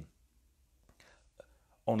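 A pause in a man's speech: near silence with a faint breath and one small mouth click about a second and a half in, then his voice starts again just before the end.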